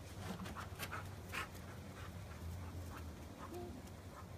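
A dog moving about close by: a scatter of faint short scrapes and clicks over a low steady hum.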